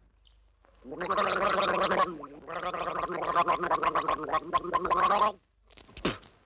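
A voice making a long, quavering sound with a rapid flutter, in two stretches: about a second, then nearly three seconds after a short break.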